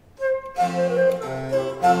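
Two baroque transverse flutes (traverso) with harpsichord and viola da gamba continuo, period instruments at low pitch (a=396), begin playing after a silence: one note about a fifth of a second in, then the full ensemble about half a second in, the flutes' melody over a held bass line.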